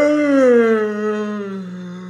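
A single long, loud vocal sound with no words, starting abruptly and sliding slowly down in pitch as it fades toward the end.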